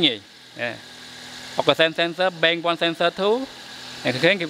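Mostly a man talking, with a car engine idling faintly and steadily underneath.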